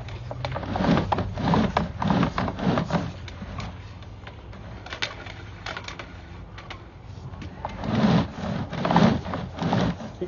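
Sewer camera push cable being pulled back out of the line and onto its reel: irregular knocking and clattering over a steady low hum. It goes quieter in the middle and picks up again near the end.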